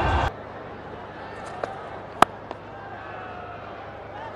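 Stadium crowd ambience with faint distant voices, broken about two seconds in by a single sharp crack of a cricket bat hitting the ball. A louder sound cuts off suddenly just after the start.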